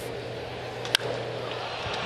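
One sharp crack of a wooden baseball bat meeting a pitched ball about a second in, solid contact that sends a deep fly ball to left field, over steady crowd noise in a ballpark.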